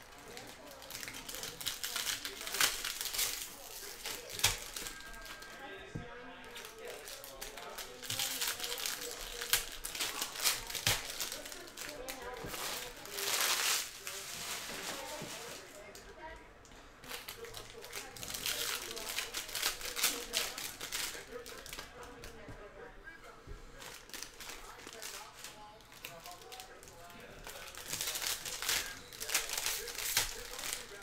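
Foil wrappers of baseball-card packs crinkling as the packs are ripped open and the cards handled, in irregular bursts with the loudest about halfway through.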